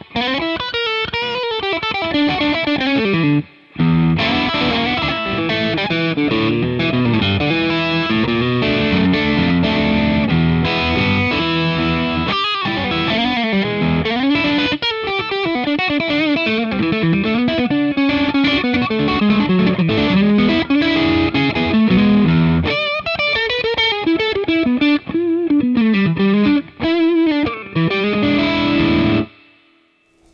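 Fender Custom Shop '57 Stratocaster Relic electric guitar played through an amplifier with the selector in the number three position, the middle pickup alone. One long stretch of playing with a short pause about three and a half seconds in, stopping just before the end.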